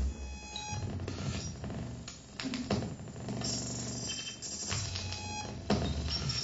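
Live electronic music played from a laptop and a small controller: a sparse, glitchy texture of thin high beeping tones over a low hum, broken by about three sharp crackling clicks.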